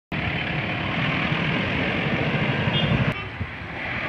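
Cars driving past close by, loud engine and tyre noise from a white Toyota Innova. About three seconds in the sound drops suddenly to a quieter pass of another SUV.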